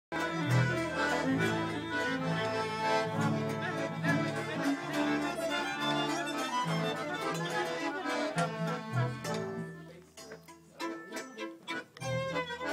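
A small folk band playing live: hammered dulcimer, two fiddles, accordion and double bass. About ten seconds in, the music thins out to a few soft separate notes.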